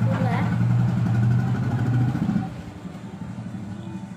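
An engine running at a steady low pitch close by. It is the loudest sound until about two and a half seconds in, when it drops off sharply.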